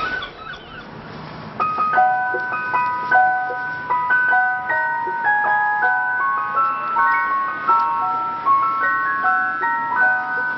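An ice cream van chime tune: a plinking melody of bell-like notes, starting about a second and a half in.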